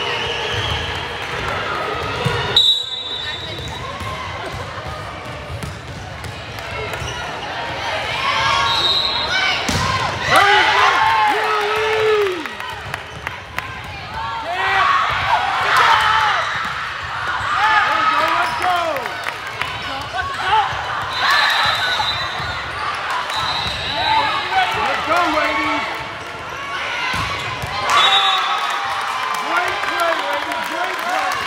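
A volleyball rally in a large gym: the ball is struck and bounces with sharp thuds among players' calls and spectators' shouting, which echo in the hall. A few short high-pitched squeaks or tones come through now and then.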